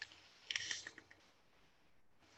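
A short, faint draw on a series mech mod dripper (Noisy Cricket with a Mutilator RDA). About half a second in there is a brief airy hiss with light crackle as the coil fires, and then it goes quiet.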